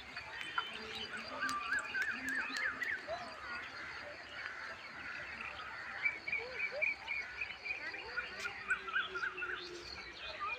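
Rural outdoor chorus of small animal calls: many short chirps and trills, with a few runs of quick repeated notes about two seconds in, in the middle and near the end.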